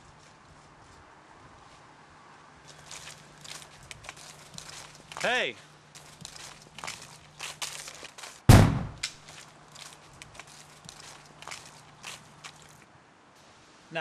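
Footsteps on a leaf-strewn gravel path. A short shout comes about five seconds in. A single loud shotgun blast with a deep boom follows about eight and a half seconds in.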